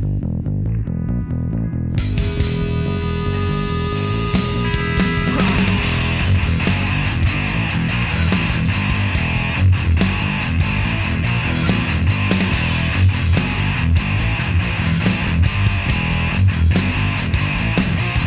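Instrumental passage of a rock song by a guitar, bass and drums trio. For about the first two seconds only bass guitar and drums play. Then electric guitar and cymbals come in, with held guitar notes at first, and the full band plays on.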